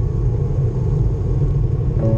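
Wind buffeting the microphone of a camera mounted on a moving bicycle: a loud, rough, low rumble with no tones in it.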